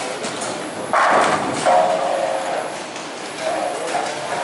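Bowling alley din: background chatter and lane noise, with a loud thud about a second in.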